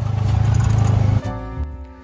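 Honda Pioneer 500 side-by-side's single-cylinder engine running, heard from the cab as a loud low pulsing rumble under background music; a little over a second in it cuts off, leaving only strummed acoustic guitar music.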